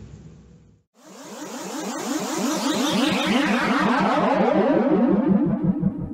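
Synthesized transition sound effect: a rapidly pulsing electronic drone begins about a second in. A sweep over it falls from high to middle pitch as it swells in loudness, and it cuts off abruptly just after the end.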